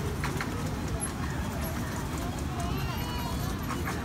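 A small amusement-park ride-on train rolling along its track, with a few irregular clacks from its wheels over a steady low rumble. Voices can be heard faintly in the background.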